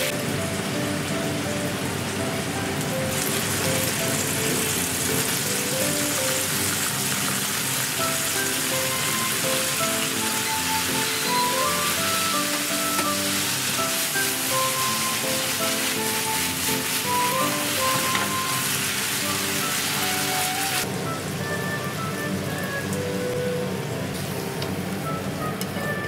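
Bacon and pasta cooking water sizzling in a hot frying pan, with spaghetti being tossed in it. The sizzle grows louder about three seconds in and drops away near the end. Background music with a simple melody of short notes plays throughout.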